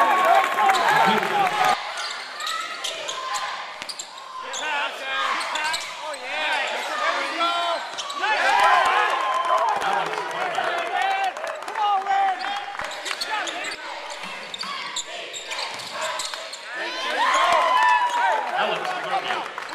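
Live basketball game sounds in a large, sparsely filled arena: players shouting and calling out on court, loudest near the start, about halfway and near the end, with the ball bouncing on the hardwood floor.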